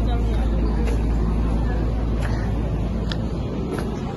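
Outdoor street ambience: a steady low rumble, with people talking faintly in the background.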